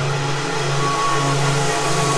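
Progressive trance track without its kick drum: sustained low synth notes under a dense, steady wash of noisy synth texture, with a brief higher note about a second in.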